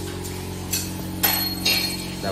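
Metal hand tools clinking on metal during motorcycle repair work: three short sharp clinks, the loudest about a second and a quarter in, the last with a brief high ring. A steady low hum runs underneath.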